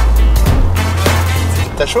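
Background music with a heavy, sustained bass line and a steady beat; the bass drops away near the end as a voice speaks one word.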